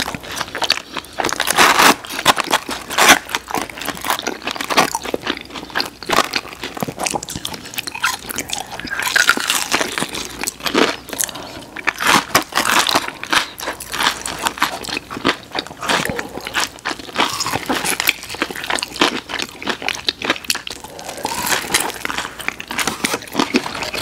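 Close-miked chewing and biting of fried breaded boneless chicken wings by two people: many irregular crisp crunches and clicks that go on without a break.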